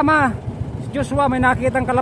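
A person's voice with held, sliding notes, more like singing than talk, over the low, pulsing running of a small boat's engine.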